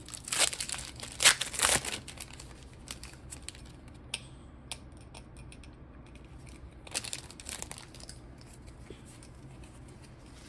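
Foil booster-pack wrapper crinkling and tearing as it is pulled open, loudest in the first two seconds. A shorter rustle follows about seven seconds in.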